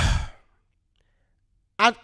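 A man's short sigh breathed out into a close microphone, lasting about half a second.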